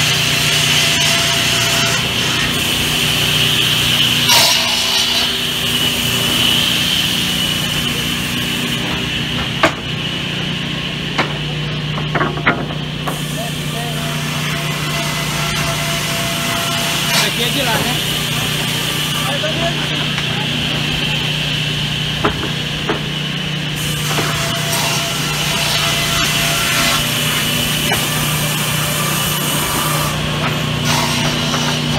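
Sawmill circular saws running steadily with a constant hum and high whine while teak boards are cut, broken by a few sharp wooden knocks and clatters of boards being handled about a third to three quarters of the way through.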